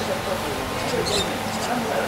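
Distant, indistinct voices of cricketers calling across the field over a steady background hiss, with a few short high chirps.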